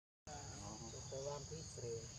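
A newborn macaque giving a run of short, high-pitched cries over a steady insect chorus. The sound starts after a brief silent gap.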